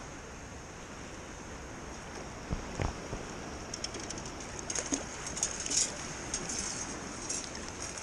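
Shallow bay water sloshing and lapping around wading legs, with a run of small crisp splashes and trickles in the second half.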